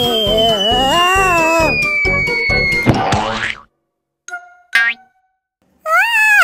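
Cartoon background music with sound effects: a long falling whistle and a wobbling boing, until the music cuts off suddenly about three and a half seconds in. Then come two short effects and, near the end, a brief rising-and-falling cartoon cry.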